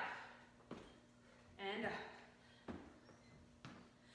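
Faint sharp knocks about once a second from a woman swinging a kettlebell and stepping on a wooden floor, with a short vocal sound from her about halfway through and a faint steady hum underneath.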